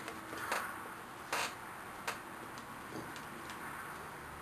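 A few short plastic clicks and scuffs as a drip-line nipple is pushed and worked into the punched hole in blue stripe drip pipe.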